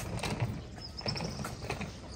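Wheels of a hard-shell rolling suitcase clacking unevenly over the joints of stone paving slabs, with footsteps on the paving.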